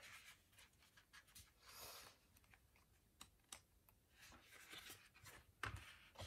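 Faint rustling and light taps of a sticker book's paper pages being flipped, with a soft swish of a page turning about two seconds in and a sharper tap near the end.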